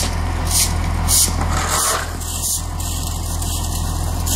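Loader's diesel engine idling steadily, with a shovel and a rake scraping sawdust off the asphalt in short strokes about twice a second.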